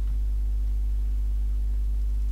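Steady low electrical hum, strongest at its lowest tone, with fainter steady overtones above it.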